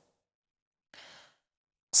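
A man's short, faint intake of breath about a second in, with near silence around it.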